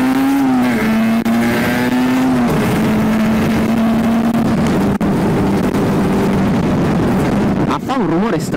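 A 50 cc two-stroke sport motorcycle engine is heard from on board, cruising at low, steady revs with wind noise. Its pitch drops slightly twice in the first few seconds, then holds level. The rider goes on to ask what is wrong with it.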